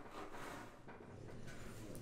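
Faint handling noise as the webcam is moved in its moulded plastic packaging tray, with a few quiet light knocks.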